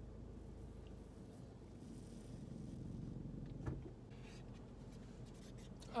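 Quiet, steady low rumble of a car cabin on the road, with faint rubbing noises and one soft click a little past halfway.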